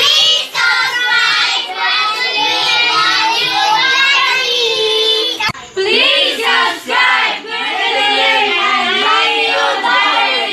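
A group of children singing together. A brief break about five and a half seconds in, then another group of young voices sings on.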